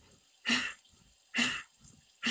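Bhastrika (bellows) breathing: two sharp, forceful exhalations about a second apart, each a short puff of breath.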